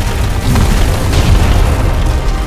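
Explosion sound effect: a loud boom that hits at once and rolls on as a deep rumble, with music underneath.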